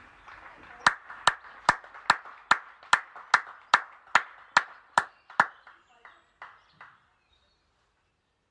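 One person clapping hands at the end of a song: a steady run of sharp claps, a little over two a second, that fades out with a few softer claps near the end.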